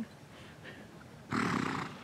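A horse snorting once, a short breathy blow through the nostrils lasting about half a second, a little past the middle.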